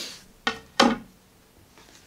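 A carved wooden branch set down on a wooden tabletop: two short knocks about a third of a second apart.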